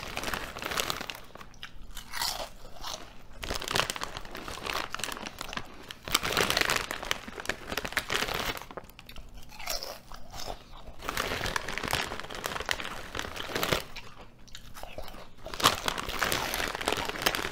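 Close-miked crunching and chewing of Ruffles ridged potato chips, coming in bouts with quieter spells between bites.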